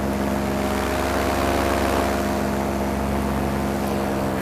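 Paramotor's two-stroke engine and propeller running at a steady, even speed during a low approach to landing.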